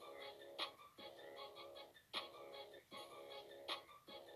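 Hip-hop producer's beat playing: sustained synth chords in short repeating segments, with a sharp snare or clap hit about every one and a half seconds.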